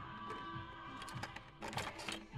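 Quiet background music with a few sharp plastic clicks from blister-carded Hot Wheels cars being flipped on store pegs, a cluster of clicks coming a little before the end.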